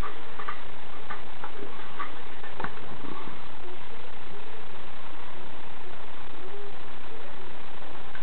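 Light clicks and taps of a small nitro engine's aluminium crankcase and crankshaft being handled and pushed, a few in the first three seconds, over a steady hiss.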